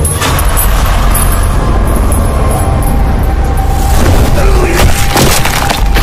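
Horror film soundtrack: a dark music score with a held tone, then a run of loud cracking, crashing impacts in the second half.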